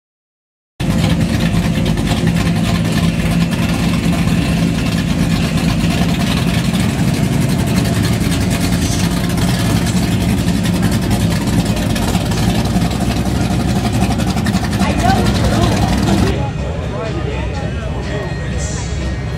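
A classic car's engine running with a steady low drone as the car rolls slowly past, over people talking. It begins about a second in and gives way about 16 seconds in to quieter outdoor chatter.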